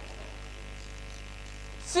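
Steady low electrical mains hum, one even buzz with its overtones and no change in level. A man's voice starts just at the end.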